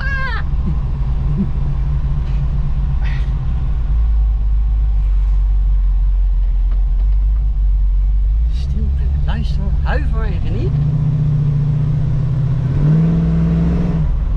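1974 Dodge Challenger's V8 heard from inside the cabin while driving: a steady low drone that settles a little lower about four seconds in, then revs rising in steps over the last five seconds as the car accelerates.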